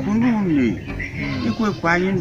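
A man speaking in conversation, his voice rising and falling in pitch.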